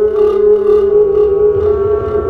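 Live electronic drone music: a sustained tone with stacked overtones holds steady, while short bursts of hissing noise come in about twice a second.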